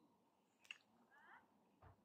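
Near silence, broken only by a faint single click.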